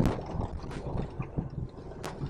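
Low, steady rumble of a car on the move, heard from inside the cabin.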